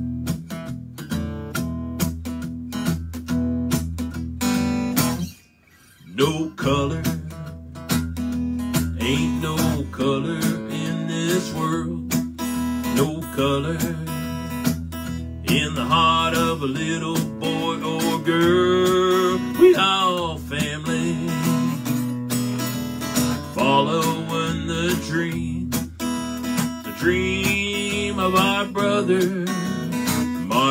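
Acoustic guitar strummed and picked as a song's opening, with a brief stop about five seconds in. A man's singing voice comes in over the guitar from about nine seconds on.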